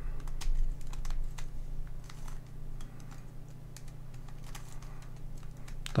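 Plastic clicking of a MoYu Redi Cube as its corners are twisted by hand: a quick run of clicks in the first couple of seconds, then fewer. A steady low hum sits underneath.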